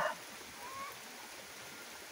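Steady hiss of falling rain, with one faint short rising call about half a second in.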